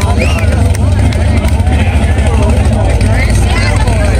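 Chevrolet Chevelle drag car's engine idling loudly and steadily on the burnout pad after its burnout, its pitch not rising, with crowd voices chattering over it.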